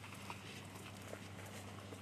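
Faint crunching and crackling of boots stepping through dry grass and brush, a few small scattered crackles over a steady low hum.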